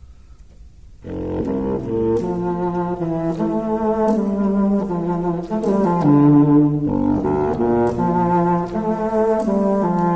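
Solo contrabassoon playing a line of short, separate low notes that step up and down in pitch. It enters about a second in, after a brief pause.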